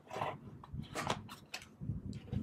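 A smartphone being set down and shifted into the plastic tray of a UV sterilizer box: a series of light knocks and scrapes.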